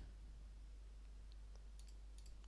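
Near silence with a few faint computer mouse clicks in the second half.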